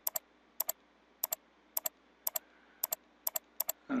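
Computer mouse button clicked repeatedly, about twice a second, each click a quick double tick of press and release.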